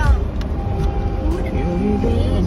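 Car driving on a snow-covered road, heard from inside the cabin as a steady low rumble of engine and tyre noise.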